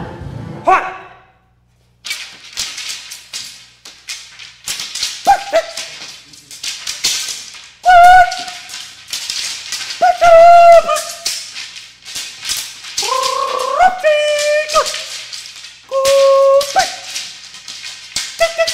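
Experimental noise and musique concrète recording: a dense crackle of clicks and static that cuts out briefly about a second and a half in, with short pitched cries bending up and down over it several times, the loudest about eight and ten seconds in.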